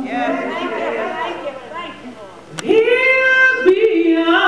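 Voices in a church: overlapping voices and a fading held note, then about two-thirds of the way in a woman's voice slides up into a long held sung note through a microphone.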